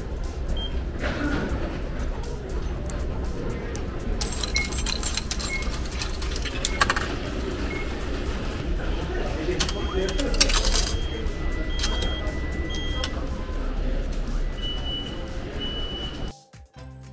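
Omron ticket vending machine giving short electronic beeps as its touchscreen is pressed, and coins clicking and rattling into it twice, over the busy chatter of a station concourse.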